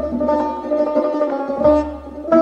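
Persian tar playing a melody of quick plucked notes, with tombak hand-drum accompaniment.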